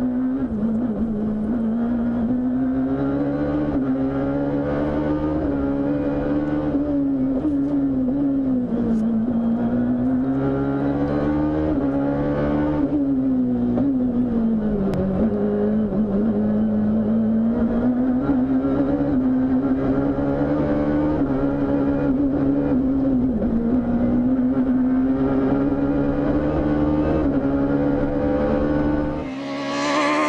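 Rally car engine heard from inside the cockpit at stage speed, its revs rising and falling through gear changes and braking, with the lowest dip about halfway through. Right at the end the sound switches to a rally car approaching, heard from the roadside.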